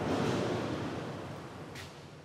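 A soft, even rushing noise, like surf or wind, that fades away steadily.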